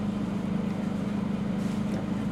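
Steady low hum of a car running, heard from inside the cabin, with no change across the moment.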